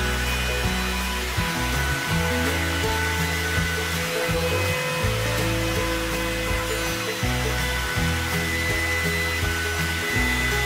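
Router in a router table running with a steady whine as a wooden board is fed past the bit along the fence, over background music.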